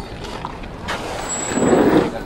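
A motor vehicle passing close by, its noise swelling through the second second, with a brief thin high whistle near the end.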